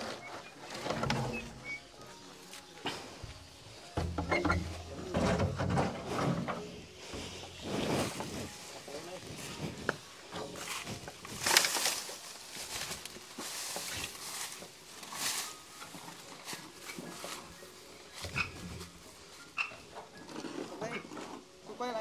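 Corrugated metal roofing sheets wobbling and clattering as they are carried by hand, with a few sudden sharp metallic clatters, the loudest about halfway through, and low voices and grunts at times.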